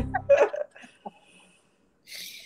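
A woman laughing in a few short, breathy catches, all within about the first half-second.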